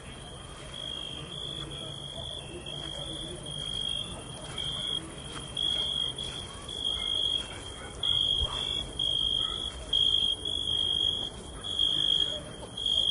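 Cricket chirping: one high-pitched trill repeated in pulses of about half a second to a second, growing louder in the second half.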